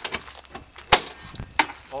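Metal paddle latches on an aluminium diamond-plate box being unlatched and the lid lifted: a few sharp clicks, the loudest about a second in and another about half a second later.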